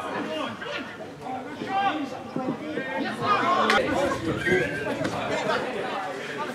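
Indistinct chatter: several voices talking over one another, no words clear.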